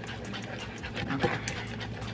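A plastic spoon stirring a thick, bubbling sauce in a Caraway ceramic-coated saucepan: soft swishing strokes through the liquid with many small irregular clicks.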